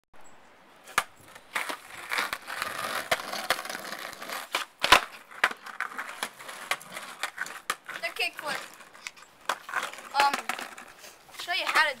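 Skateboard kickflip attempts: sharp clacks of the board's tail and deck hitting the pavement, one about a second in and the loudest just before five seconds, between stretches of the wheels rolling over asphalt. A child's voice comes in near the end.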